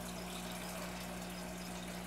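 Aquarium equipment running: a steady, quiet water trickle and bubbling over a constant low hum.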